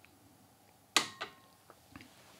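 A small porcelain tasting cup set down on a bamboo tea tray: one sharp clack about a second in with a brief ring after it, followed by a few faint ticks.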